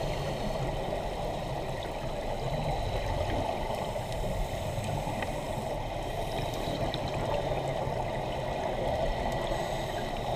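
Steady underwater ambient noise as picked up by a submerged camera: an even muffled rushing of water with a low rumble and faint scattered ticks.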